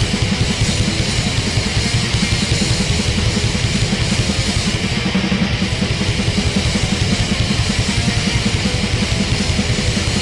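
Loud, fast heavy band music: distorted electric guitars and bass over rapid drumming, without vocals.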